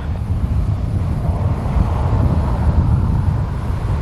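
Short 360's twin Pratt & Whitney Canada PT6A turboprop engines running at low taxi power, a steady low rumble.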